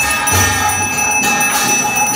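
Temple bells ringing continuously during an aarti, with a dense run of metallic clangs. A low booming beat comes in about a third of a second in.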